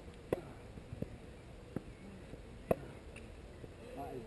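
Touchtennis rally: short rackets striking a foam ball in a series of sharp hits, about four in all, the loudest two roughly two and a half seconds apart.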